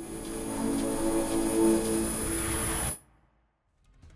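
Short musical logo sting: a held chord of steady tones with a thin high whine above it, cutting off suddenly about three seconds in, followed by silence.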